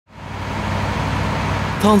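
Fire trucks' engines running steadily, a low hum under outdoor noise, fading in at the start. A man's voice begins near the end.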